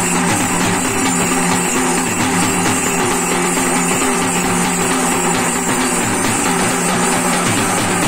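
Loud, continuous folk drumming on a large steel-shelled dhol and a second metal drum, beaten with sticks in a fast steady rhythm, over a steady droning tone.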